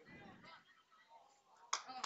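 Faint background noise at the commentary microphone, with a short sharp click about three quarters of the way through.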